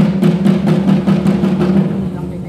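Fast drumming, about four to five strokes a second, over a steady low tone, accompanying a cheer routine.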